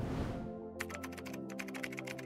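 Computer keyboard typing sound effect: a run of quick, irregular key clicks starting about half a second in, over soft background music.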